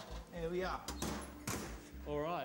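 Kitchen oven being shut after a dish goes in: a couple of light clicks and then a sharper knock about one and a half seconds in, with a brief spoken word before them.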